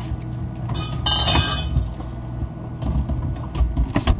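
Food being handled at an open refrigerator: small knocks and rustles, with a glass clink that rings briefly about a second in, over a steady low hum. The refrigerator door shuts with a knock at the end.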